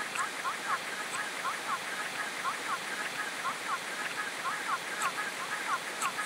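Many overlaid copies of a home-video soundtrack of a young child's voice and room sound, smeared together into a steady hiss with many short, overlapping rising and falling voice-like glides.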